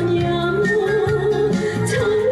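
Trot song playing: a long held melody note over a steady, repeating bass beat.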